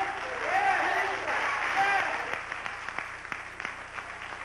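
An audience applauding, with separate hand claps standing out in the second half; a voice speaks over it for about the first two seconds.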